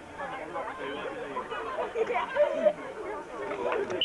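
Indistinct chatter of several voices talking over one another, no words clear.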